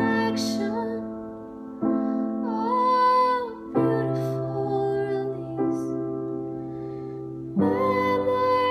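A woman singing a slow ballad and accompanying herself on piano. Held piano chords change about every two seconds, and her voice comes in and out over them.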